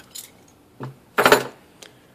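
Light metallic clinks and jangling from a loose metal intake bracket handled in the hand, the loudest just after a second in.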